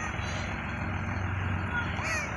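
School bus engine idling at a stop, a steady low rumble, with a few faint high chirps near the end.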